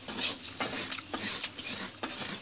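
Coconut flesh being scraped against the edge of a metal spoon to grate it: a run of short scraping strokes, about two a second.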